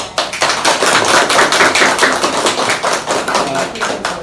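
A small group of people clapping hands in a round of applause: dense, rapid claps that start suddenly and keep up steadily.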